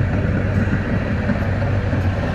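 Steady low rumble heard inside a car's cabin in traffic, with a tram running past close outside the side window.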